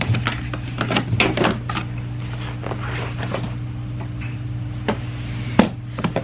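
Hard plastic clicks and knocks as an infant car seat carrier is unlatched and lifted off its base, with the sharpest knock near the end, over a steady low hum.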